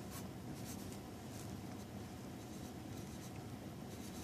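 Faint, scattered light scratching and rustling over a steady low hum.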